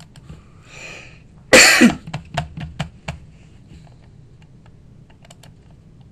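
A man coughing once, close to the microphone, about a second and a half in, followed by a few light clicks at the computer.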